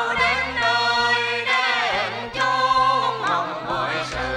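Tuồng (Vietnamese classical opera) performers singing a melody together as a group, the voices sliding and bending between notes, with low held notes that change pitch every second or so underneath.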